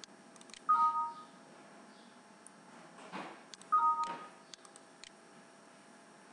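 Two short two-tone electronic beeps, about three seconds apart, each a pair of steady notes lasting about half a second.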